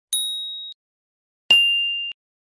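Two electronic ding sound effects from a subscribe-button animation. The first is a high ding that rings for about half a second. The second, at about a second and a half, is a click followed by a slightly lower ding.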